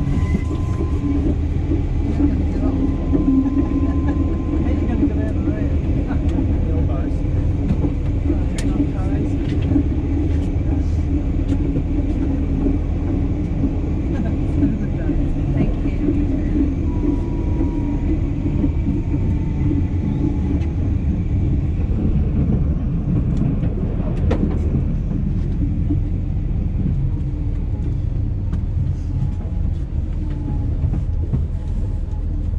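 Tram running along the track, heard from inside the car: a steady low rumble of wheels on rails, with a few faint brief high whines and an occasional sharp click.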